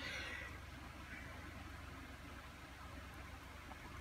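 A man's stifled yawn: faint breathy air in the first second or so, over a steady low room hum.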